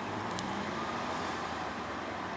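Steady low hum of motor-vehicle noise with a faint high click about half a second in.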